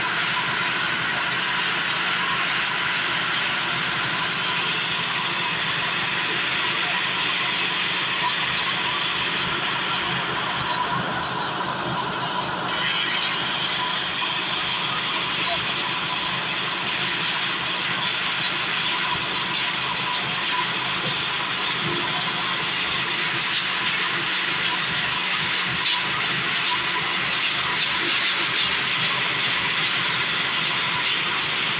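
Small petrol engine on a portable rotary well-drilling rig running steadily, driving the drill pipe down through mud.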